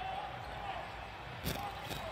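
Basketball being dribbled on the hardwood court during live play, as picked up by the courtside microphones. One sharper bounce stands out about one and a half seconds in.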